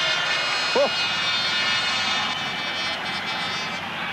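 Several speedway bikes' 500 cc single-cylinder engines running high and steady as the riders circulate after the finish of a heat, fading slightly toward the end.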